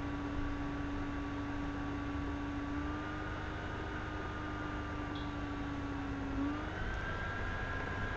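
Steady electrical appliance hum with a faint higher whine above it. Both step up slightly in pitch about six and a half seconds in.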